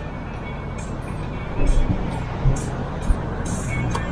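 Steady rumble of street traffic with a few low thumps, under background music.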